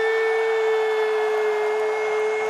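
A man holding one long, steady, high note into a handheld microphone, amplified.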